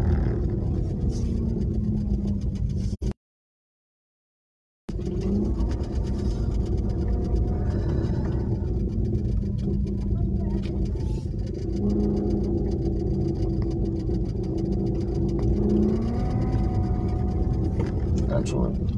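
Car engine and road noise heard from inside a slowly moving car, with a steady rumble and an engine note that drifts gently up and down. The sound cuts out completely for about two seconds, a few seconds in.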